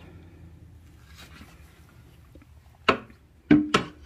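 Three sharp knocks of a hard black plastic fireworks mortar tube against a wooden mortar rack and its other tubes, coming close together near the end, the second with a brief hollow ring.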